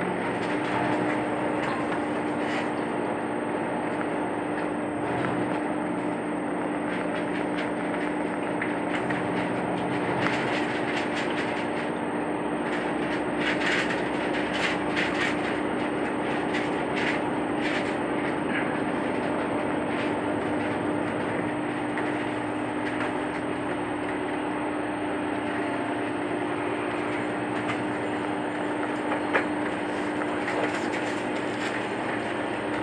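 Cabin of the Echigo Tokimeki Railway ET122 diesel railcar 'Setsugekka' as it pulls away from a station: steady running noise with a constant hum, and clicks from the wheels and rail joints once it gets moving, most of them about halfway through.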